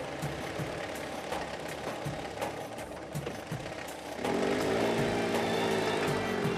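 Car engines running as the cars pull away, with an irregular knocking clatter. About four seconds in, music comes in with a sustained, gently swelling note.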